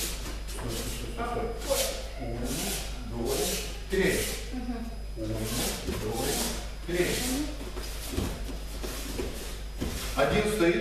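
Swishing and rubbing of bare feet and cotton martial-arts uniforms on a training mat as pairs grapple, several short swishes over indistinct murmured talk.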